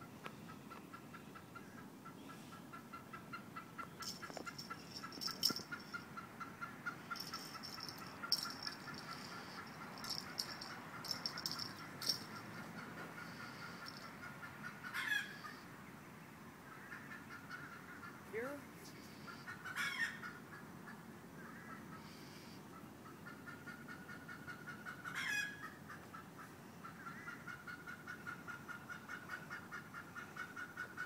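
Animal calls: a rapid pulsing trill repeating a few times a second, with a higher buzzing call in the first half and three short sharp chirps spaced about five seconds apart in the second half.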